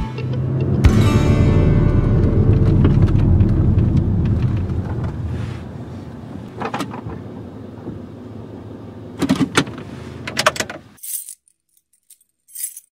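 Car cabin road and engine noise: a steady low rumble that dies away over a few seconds as the car slows. A few clicks and light rattles come near the end, then it goes silent.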